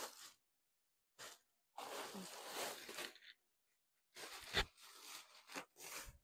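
White plastic drawstring trash bag rustling and crinkling in irregular short bursts as clothes are stuffed into it and it is drawn closed by its drawstrings, with one soft thump about four and a half seconds in.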